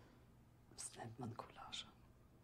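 Faint, soft spoken dialogue, a few quiet words starting a little under a second in, with near silence before them.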